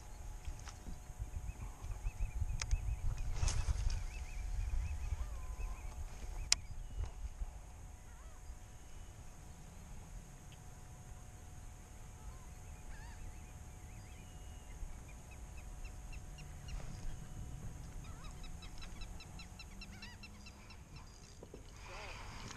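Faint bird calls: a few scattered ones, then a quick run of chirps near the end, over a steady low rumble that is strongest in the first few seconds.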